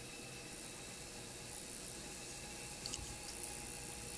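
Quiet steady hiss of room tone through a studio microphone, with faint steady hum tones and a few small clicks about three seconds in.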